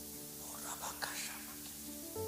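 Soft background music of held, sustained chords, with quiet whispered speech over it for about a second in the middle.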